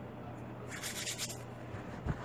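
Soft rubbing and brushing of floured hands handling bread dough as it is set into a baking pan: a few brief, hissy strokes about a second in, over a faint steady hum.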